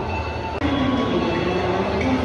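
Railway station sound of a train: a steady low rumble with thin, high steady squealing tones from the wheels.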